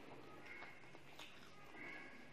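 Faint eating sounds: fingers working through rice on a steel tray, with chewing, a few small clicks and brief squeaky mouth sounds.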